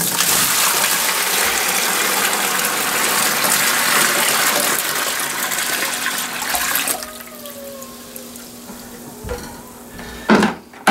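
About five gallons of water poured from a plastic bucket into a narrow trash can, a heavy steady gush for about seven seconds that then drops to a much quieter trickle as the bucket empties. A light knock comes near the end.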